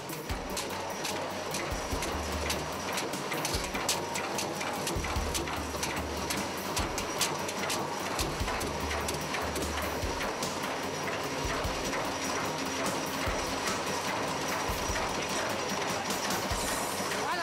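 A power hammer strikes the iron rim of a large two-handled wok in rapid, continuous blows as the rim is raised, the metal ringing faintly under the strikes, with heavy low thuds coming and going.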